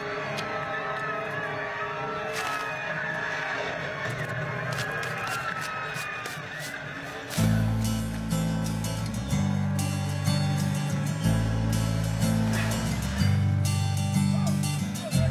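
Background music: a soft opening with layered held and sliding notes, then about seven seconds in a strong bass line of held notes enters, changing pitch every second or two and making the music louder.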